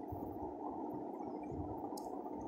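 Steady low background hiss and hum of room tone, with no distinct events except a faint click near the end.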